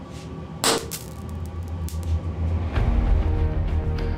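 Background music, with one short sharp pop about two-thirds of a second in: a drop of bromine reacting violently with a lump of cesium metal.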